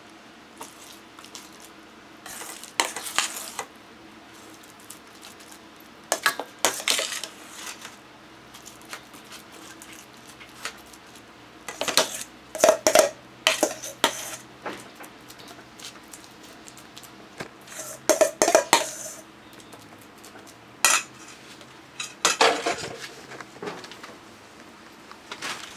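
Metal potato masher scraping and knocking against stainless steel bowls as mashed sweet potato is scooped from one bowl into another. It comes in short clattering bursts every few seconds, some with a brief metallic ring.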